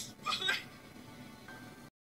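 A man sobbing, two or three high, wavering wails in the first half-second, over quiet background music. The sound drops to dead silence just before the end.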